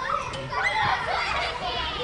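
Several young children laughing and shouting at play, a stock sound effect of high voices rising and falling over one another.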